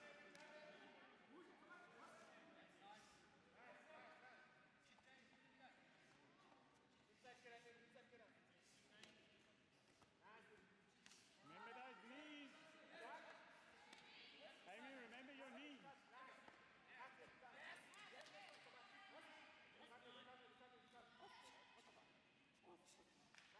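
Faint, unintelligible voices calling out across a large hall during a full-contact karate bout, with shouts that rise and fall in pitch about halfway through. Scattered dull thuds are heard among the voices.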